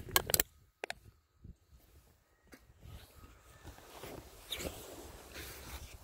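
An aluminium drink can being handled: a few sharp clicks and crinkles of the thin metal close to the microphone, loudest in the first half second. Quieter rustling follows in the second half.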